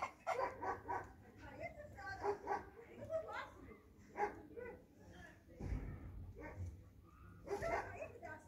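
A dog barking and yelping in short repeated calls, mixed with voices, with a brief low rumble a little past the middle.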